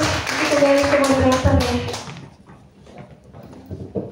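Audience applauding, with a voice calling out over it, dying away about two seconds in; after that the room is quiet but for a few light taps.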